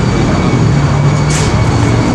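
Steady low engine hum from a nearby running motor, with a brief hiss about one and a half seconds in.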